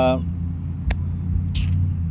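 A man's short "uh", then a steady low outdoor rumble with a single sharp click about a second in.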